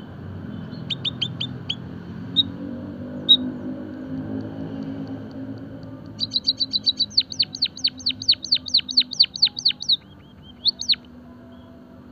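White-headed munia calling: a few short high chirps, then a rapid run of about twenty quick downward-sweeping notes lasting some four seconds, then a couple more notes.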